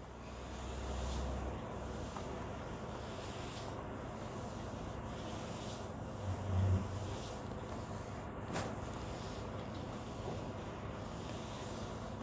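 Garlic cloves frying in hot oil in an iron kadai: a steady, even sizzle. A brief low thump comes about six and a half seconds in, and a sharp click a couple of seconds later.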